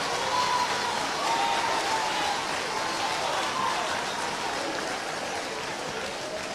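Congregation applauding steadily, with a few voices calling out over the clapping.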